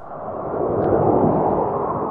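A rumbling rush of noise that starts abruptly, swells, then fades and cuts off suddenly.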